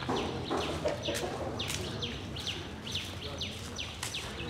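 Birds calling outdoors: a run of short, steeply falling chirps, two or three a second, with a lower, rougher call in the first second.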